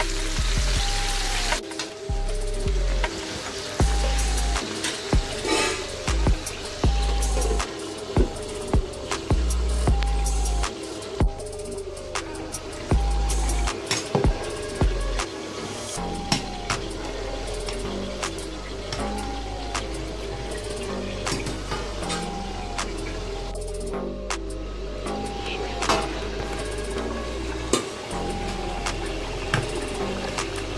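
Background music over chicken frying in a pan, with sharp clicks and scrapes of a metal spatula. About halfway through, a metal spatula stirs rice in a pot of boiling water.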